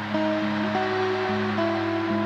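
Slow doom metal song with guitar: held notes that move to a new pitch about every half second.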